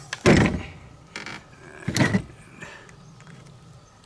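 Three knocks and thumps on a folding table, the loudest about a quarter second in, with creaky handling noise between them. They come from a heat gun being set down and a PEX tube being twisted and worked on its fitting.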